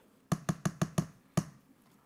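A spatula tapped against the rim of a metal cake tin to knock off batter. A quick run of sharp taps, about six a second, lasts under a second, then comes one last tap.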